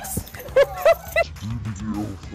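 A woman laughing in a run of short, high-pitched bursts, then lower laughing voices near the end.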